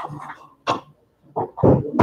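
A person's short vocal bursts, not clear words: a brief one under a second in, then a louder, noisier one in the second half.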